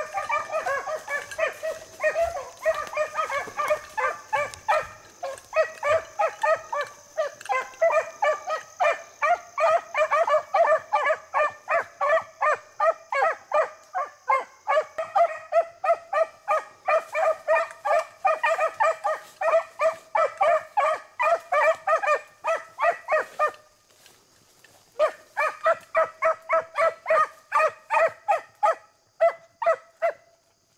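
Beagles baying on a rabbit's scent line: a fast, steady run of short, ringing barks, several a second. Near the end it breaks off for about a second and a half, then resumes.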